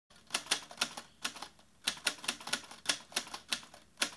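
A run of sharp mechanical clacks, like keys being struck, coming about three or four a second in irregular groups, with a short pause near the middle.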